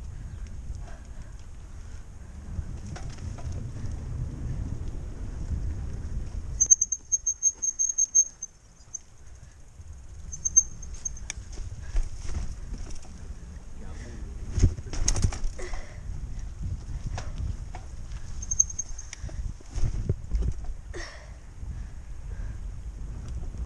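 A mountain bike rides over wooden boardwalk planks and a dirt trail: wind rumble on a helmet-mounted mic, tyre noise and frequent knocks and rattles of the bike over bumps. Short high-pitched squeals come in a few times, the longest at about a third of the way through. The rumble briefly drops out just after that.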